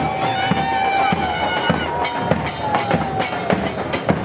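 Murga carnival band playing live: bass drums struck with sticks in a quick, steady beat with bright cymbal crashes, under a long held high tone that slides slowly in pitch.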